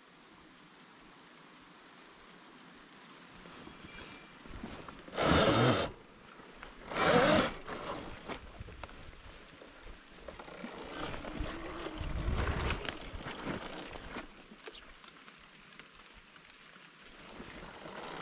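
A 72-volt Sur-Ron electric dirt bike ridden over wet grass and onto a woodland trail. Tyre, drivetrain and wind noise buffet the camera, with two short, loud rushes of noise about five and seven seconds in.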